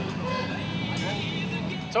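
Motorcycle and trike engines idling together, a steady low rumble.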